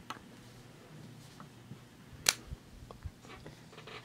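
Quiet handling noises on a desk: a few small clicks and knocks, one sharp click about two seconds in, then two soft thumps.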